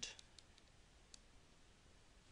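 Near silence with a few faint, short clicks of a pen stylus tapping on a tablet screen while handwriting, mostly in the first second.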